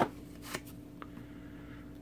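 Hockey trading cards being handled: two faint short ticks as one card is put down and the next picked up.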